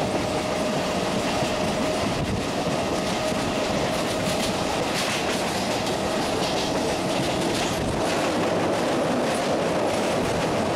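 Electric local train running at speed, heard from its open doorway: a steady rush of wheels on rail, with a clickety-clack over rail joints in the middle and a steady hum in the first half.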